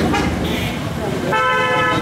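A vehicle horn sounds once near the end, a single steady tone held for well under a second.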